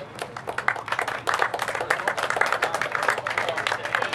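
Audience applauding an award winner: scattered hand claps at first, thickening into dense clapping about a second in.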